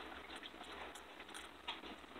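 Faint, sparse clicks and light handling noise, a few small taps as things are moved about on a kitchen counter, over quiet room tone.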